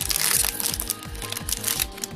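Foil wrapper of a Pokémon trading card booster pack crinkling as it is torn open, loudest in the first half second or so. Background music with a steady beat plays underneath.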